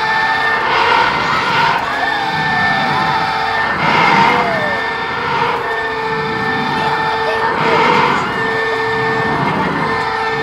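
Children squealing and shouting on a swinging fairground ride, their cries swelling about every three to four seconds with the swings, over a steady machine whine from the ride.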